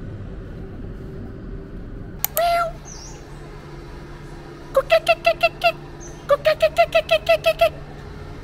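Animal calls: one short pitched call about two seconds in, then two quick runs of short chirps at about six a second, over a steady low hum.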